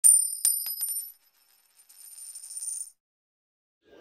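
Intro title-card sound effect: a bright, high chime struck about five times in quick succession within the first second, ringing on briefly, followed by a fainter high sparkling shimmer.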